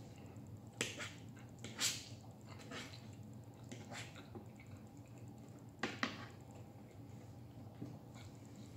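Metal fork and knife clicking and scraping against a plate while cutting chicken, a handful of short sharp clicks spaced out over a quiet room hum.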